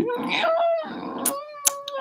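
A man's wordless, high-pitched vocalising in a vocal improvisation: one long held note that slides up about half a second in, then settles and wavers. A few sharp clicks sound in the second half.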